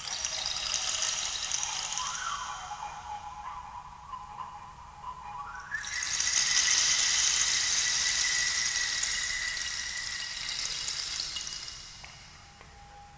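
Improvised object music: a breathy hiss with a thin squealing tone that wavers at first, then slides up about halfway through and holds at a higher pitch.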